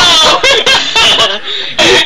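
A person laughing loudly and excitedly, with a short break near the end before the laughter picks up again.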